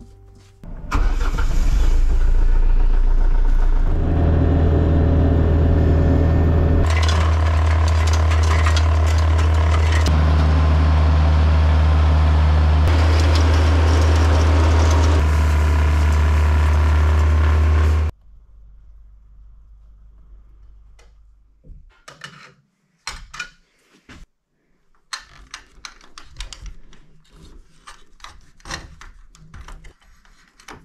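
A compact tractor's diesel engine starts about a second in and then runs steadily under load, driving a rear snowblower that is throwing snow. The sound stops abruptly about 18 seconds in. After that come faint clicks and rubbing of electrical cable being handled at a metal junction box.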